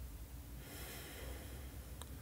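A woman's faint, slow in-breath, a soft airy hiss that starts about half a second in.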